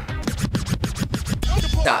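Hip hop music with DJ record scratching: a fast run of short scratched strokes over a bass beat.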